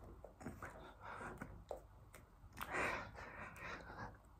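A man breathing hard through repeated push-ups: several noisy, breathy exhales, the loudest and longest just under three seconds in.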